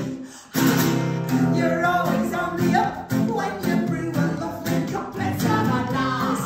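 Acoustic guitar strummed with a voice singing over it. There is a brief gap just after the start, and the song picks up again about half a second in.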